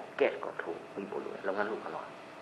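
Speech only: a person talking in short phrases, as in a lecture, with no other distinct sound.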